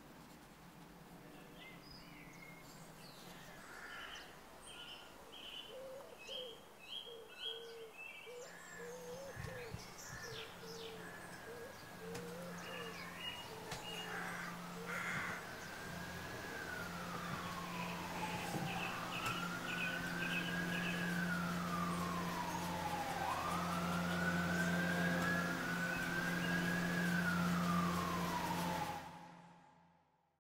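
Birds chirping over a low steady hum, then an emergency-vehicle siren wailing in slow rising and falling sweeps from about halfway through, growing louder before the sound fades out just before the end.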